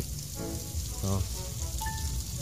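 Steady hiss and splash of water gushing out of a PVC outlet pipe fed by an industrial submersible pond pump and striking concrete tiles. The flow is very strong.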